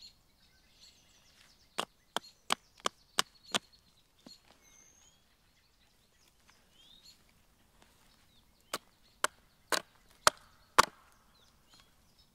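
A blade chopping into a dry pine stump to split out resinous fatwood: a run of six sharp woody strikes, then after a pause five more, the last the loudest. Faint birdsong behind.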